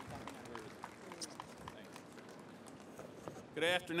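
Faint background voices and light footsteps and taps on a stage platform. Near the end a man begins speaking into a microphone with a loud, clear "Good…".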